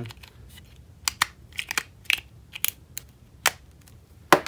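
JBL wireless earbuds and their plastic charging case being handled: about ten small, sharp clicks and taps, scattered between one and three and a half seconds in.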